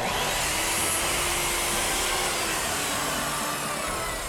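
Electric compound miter saw running and cutting through a wooden board, a loud, steady whirring of motor and blade that starts abruptly.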